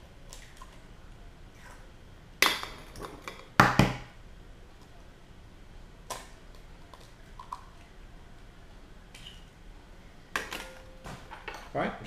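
Eggs rapped on the rim of a plastic mixing bowl to crack them: two sharp knocks a little over a second apart, then a few faint small sounds. A cluster of quicker clicks comes near the end.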